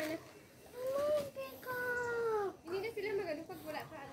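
Peacock (Indian peafowl) calling: one long wailing call about a second in, lasting about a second and a half and dropping slightly at the end.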